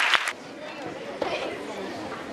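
Hand-clapping applause that stops about a third of a second in, followed by the murmur of audience chatter in a hall.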